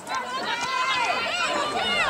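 Several voices shouting and calling over one another during a lacrosse game: players and spectators yelling across the field.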